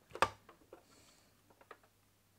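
A sharp click followed by several small clicks and taps as copper desoldering braid is worked over a circuit board with a soldering iron and its plastic spool is handled, with a faint brief hiss about a second in.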